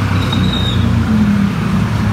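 Steady low rumble of vehicle traffic running without a break.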